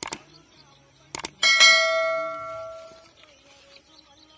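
A couple of sharp knocks, then a single metallic strike about a second and a half in that rings like a bell and dies away over about a second and a half.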